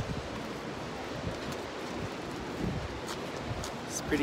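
Steady rushing noise of wind on a phone's microphone, with a few faint scuffs.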